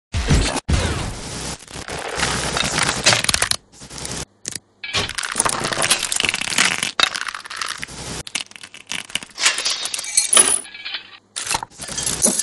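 Crackling, hissing static effects in choppy stretches, cut off abruptly several times by brief silent dropouts, as in a glitching old TV signal.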